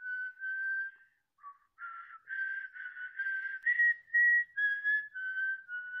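A person whistling a slow melody, one clear note at a time with a little breath noise. The notes are held about half a second each, with a short pause about a second in.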